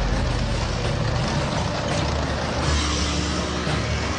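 Tank driving on a dirt road: a steady rumbling engine mixed with a dense, even track and road noise.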